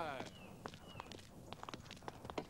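Faint, irregular footsteps of people walking on a dirt path, a handful of soft steps. Two short, high, falling chirps sound early on and about a second in.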